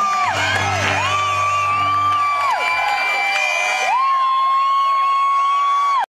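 Live country band ending a song: a last low note sounds for about two seconds while the audience cheers and whoops. A loud, held high tone runs over it, dipping and rising back twice.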